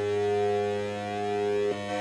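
Buzzy square-wave tone of about 100 Hz, with many harmonics, from the output of a CD4081 CMOS AND gate fed two square waves of nearly the same frequency. Its timbre slowly shifts. Near the end the tone changes suddenly as one input is stepped up to about 200 Hz.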